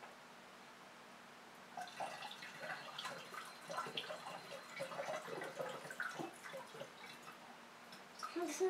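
Water poured from a ceramic jug through a plastic funnel into a round glass flask, faintly and irregularly trickling and dripping, beginning about two seconds in.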